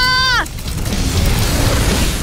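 A held, steady shout cuts off about half a second in. It gives way to a loud rushing whoosh with a low rumble: a fire-breathing sound effect of flames blasting out.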